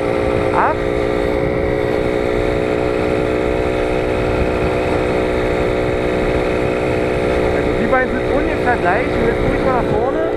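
Simson Star moped's 50 cc two-stroke single-cylinder engine running at steady cruising revs, about 30 km/h, heard from the saddle with wind rumble on the microphone. The pitch holds level throughout.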